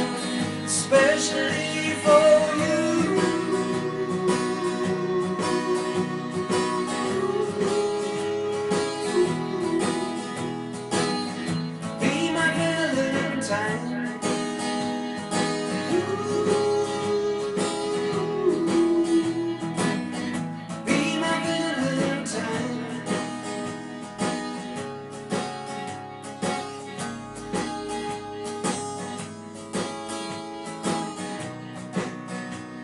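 Strummed acoustic guitar with a man singing a slow country-rock tune in long held notes. About two-thirds of the way through the voice drops out and the guitar strums on alone in an even rhythm.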